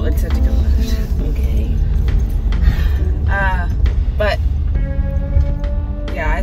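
Low rumble of a moving car, heard from inside the cabin, with music playing over it and a voice heard briefly a few seconds in.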